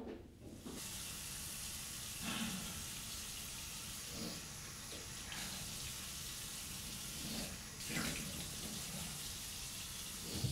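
Tap water running steadily from a chrome mixer tap into a bathroom sink, starting about a second in, with a few brief louder splashes as water is thrown on the face.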